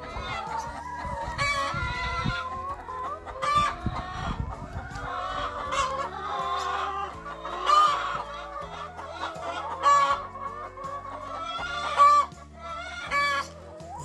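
A flock of domestic hens clucking, many short calls overlapping, with a few louder calls standing out now and then.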